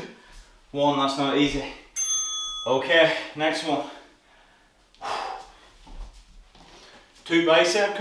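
A brief bell-like ding with several ringing tones about two seconds in, from the workout's interval timer as the work period ends and the rest period begins. A man's voice speaks on either side of it.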